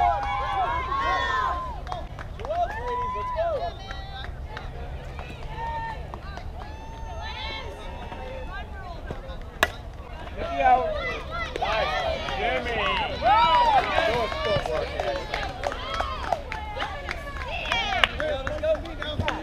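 Young players' high-pitched voices calling and cheering across a softball field, with one sharp crack at the plate about ten seconds in, after which the cheering grows louder and denser.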